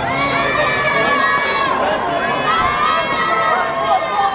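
A crowd of people shouting at once, many raised voices overlapping in a continuous din.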